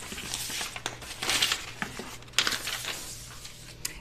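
A paper sewing-pattern piece rustling and crinkling as it is handled and laid flat on rayon fabric, in uneven rustles with a louder one about a second and a half in.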